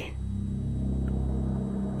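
Low, steady drone of dark ambient background music, swelling slightly.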